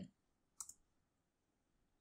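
Near silence with a single faint computer-keyboard key click about half a second in: the Enter key submitting the typed number to the running console program.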